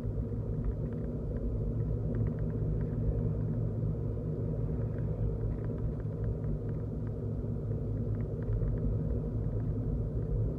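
Steady low rumble of a car driving, engine and road noise heard from inside the cabin, with faint light ticks scattered through it.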